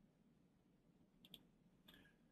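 Near silence: faint room tone, broken by a couple of brief, faint clicks a little past the middle and again just before the end.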